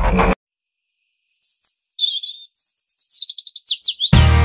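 Music cuts off just after the start. After about a second of silence, birds chirp in a run of short, high calls that come quicker toward the end.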